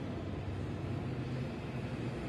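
Steady background hum and noise (room tone) with no distinct events.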